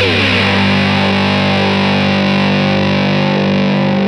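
Slide guitar on a resonator-bodied electric guitar through a Russian Big Muff–style fuzz (JHS Crimson): the slide glides down the strings in the first half second, then a distorted chord is held and rings steadily.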